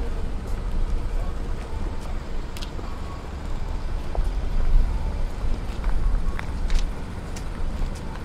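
Street traffic at a town junction, with a steady low rumble and a few light clicks.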